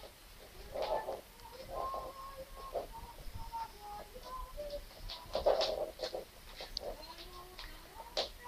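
Background music: a slow melody of clear, held single notes, with a few louder, rougher swells about a second in and again past the five-second mark.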